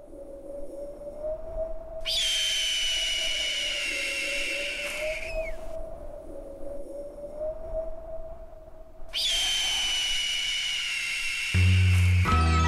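A steady, slightly wavering whistling drone, over which a long, high, piercing eagle scream sounds twice: about two seconds in, lasting some three seconds and falling away at its end, and again about nine seconds in. Music begins just before the end.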